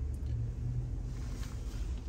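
Low, steady rumble inside a car's cabin as it sits nearly still in slow traffic: engine and road noise heard from the driver's seat.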